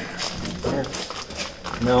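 Clear plastic bag around a new wheel hub assembly crinkling as it is handled, a run of quick, irregular crackles.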